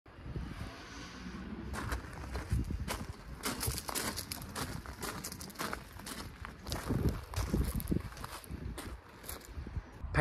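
Irregular footsteps on gravel, over a low rumble.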